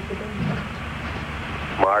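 Steady hiss of a broadcast audio feed between call-outs, with faint voices in it in the first half second or so; a man says "Mark" just before the end.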